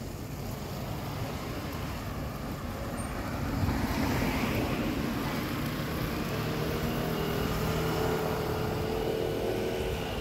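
A car driving slowly along a narrow street toward the listener. The traffic noise gets louder a few seconds in, and in the second half a steady engine hum stands out.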